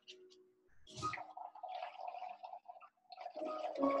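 Blowing through a drinking straw into a paper cup of soapy, coloured water, making it bubble and gurgle. It comes in two spells, about a second in and again from about three seconds in.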